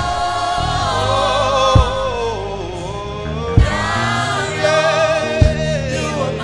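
Gospel music: a choir singing held, wavering lines over a slow, low beat that lands about every two seconds.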